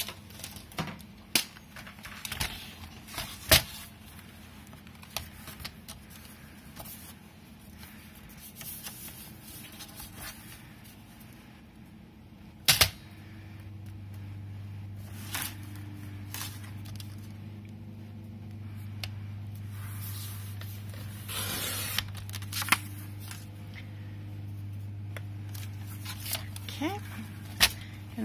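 Kraft card being handled and tapped on a cutting mat, with sharp clicks as a sliding paper trimmer is set in place. About two-thirds of the way through comes a short rasp, the trimmer's cutting head sliding along to cut the card, over a low steady hum that starts midway.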